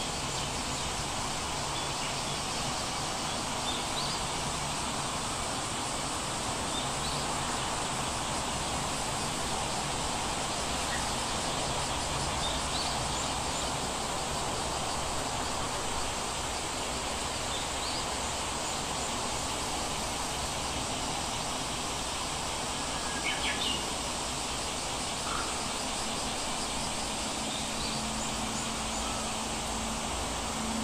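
Steady background hiss, with a few faint, short high chirps spaced several seconds apart and a brief cluster of soft sounds a little past two-thirds of the way through.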